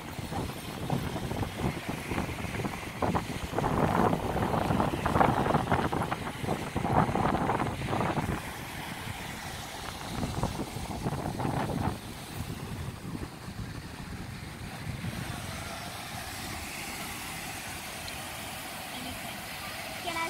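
Wind on the microphone over breaking surf, a gusty noisy roar that is loudest in the first half and settles into a steadier, quieter wash about twelve seconds in.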